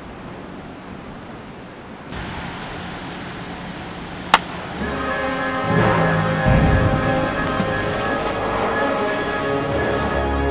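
Outdoor ambient noise with a single sharp crack about four seconds in: a baseball bat hitting a pitched ball. About a second later, background music with sustained chords begins and carries on.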